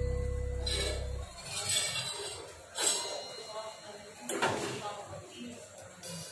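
A spoon stirring noodles in a steel pot, making a few short scraping and clinking strokes about a second apart. Guitar music dies away in the first second.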